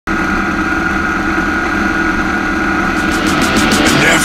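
Leonart Daytona 350 motorcycle engine running steadily. Music with a fast, ticking beat comes in near the end.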